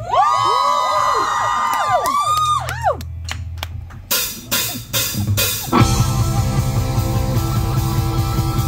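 Live rock band starting a song. For the first few seconds there are sliding notes that rise and fall, then a run of separate drum hits, and about six seconds in the full band comes in with drum kit and electric guitar.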